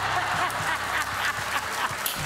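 Studio audience laughing and clapping in a steady wash, with a woman's laugh over it.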